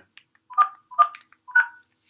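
Mobile phone keypad touch tones: three short dual-tone beeps about half a second apart, a number being keyed in answer to an automated phone menu.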